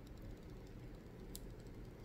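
Clear plastic protective film being peeled slowly off an eyeshadow palette's mirror: faint crackling ticks, with one sharper click about a second and a half in.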